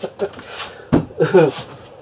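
A man's breathy laughter and voice noises, with a single knock about a second in as a glass beer bottle is set down on a wooden step.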